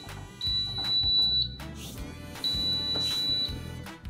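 Digital air fryer's control panel beeping: two long, high-pitched beeps of about a second each, a second apart, over background music.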